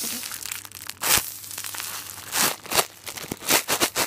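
Clear plastic bag crinkling and crackling as hands squeeze a foam cake-roll squishy inside it, in a series of loud rustling bursts that come quicker near the end.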